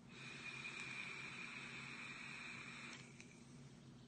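SMOK Mag vape kit with a Prince tank firing a freshly fitted coil at 60 watts during a long draw: a steady hiss with a thin whistle-like tone, lasting about three seconds and then stopping suddenly.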